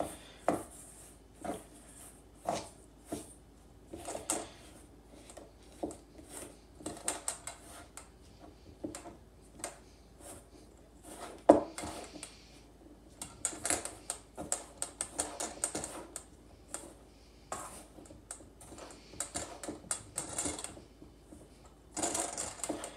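Metal spoon clinking and scraping against a metal mixing bowl while stirring a thick, dry powder-and-protein mixture, in irregular taps and scrapes with one louder clink about halfway through.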